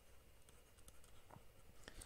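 Near silence, with a few faint ticks of a stylus writing on a drawing tablet.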